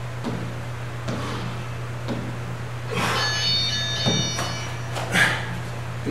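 Sneakers scuffing on a wooden floor as a man drives his knees up in a prone knee-raise exercise, about one stroke a second, with a thin high squeak from the shoes about halfway through. A steady low hum runs underneath.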